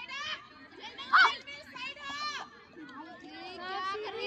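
Girls shouting and cheering during a kho-kho match: several high-pitched voices calling out and overlapping, with the loudest shout about a second in.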